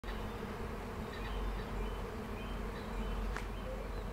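Honeybees buzzing steadily among flowering phacelia, a continuous low hum, with a faint click near the end.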